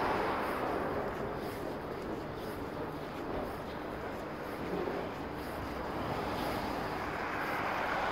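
Road traffic on a wide city avenue: a continuous noise of passing vehicles, louder at the start and again near the end as vehicles go by.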